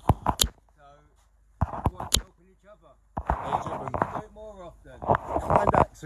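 A few sharp knocks and clacks in two quick clusters, one at the start and one about two seconds in, then a man's voice for the last three seconds.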